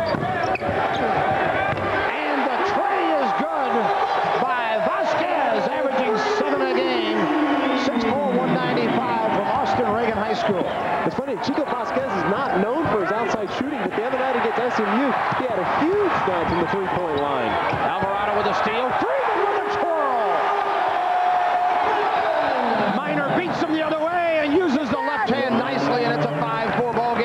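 Live basketball court sound: a ball being dribbled on a hardwood floor, with many short sneaker squeaks from players cutting and running.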